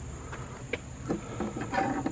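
Steady, high-pitched drone of insects, with a few faint clicks and knocks over it.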